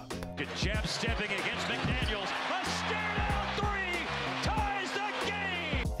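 Basketball bouncing on a hardwood court with short sneaker squeaks and arena crowd noise, over background music with steady low notes.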